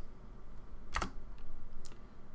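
A single sharp computer keyboard keystroke about a second in, the Enter key confirming a typed dimension value, followed by two faint ticks.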